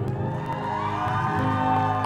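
Orchestral ballad accompaniment holding and swelling a sustained chord between two sung lines.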